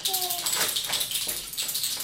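A small plastic baby rattle shaken close to an infant's head in a rapid, uneven run of rattling shakes, several a second. A short voice slides down in pitch at the start.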